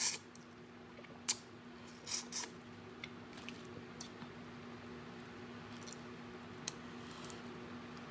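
Boiled crawfish being sucked and peeled by hand: short wet smacks and small clicks of shell, several in the first half and fewer later, over a faint steady hum.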